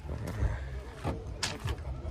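Faint background voices over a low rumble, with a short sharp click or hiss about one and a half seconds in.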